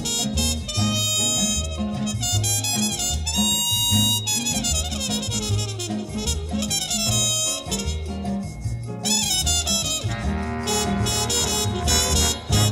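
Instrumental break of a swing-style big-band arrangement: brass and saxophones play over a steady bass beat, with no vocal.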